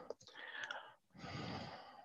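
A person's soft breathing, two quiet sighing breaths close together.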